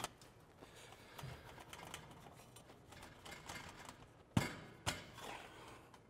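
Faint rubbing and handling of a bent stainless steel exhaust pipe being fitted onto a tailpipe, with two sharp knocks about half a second apart a little past the middle.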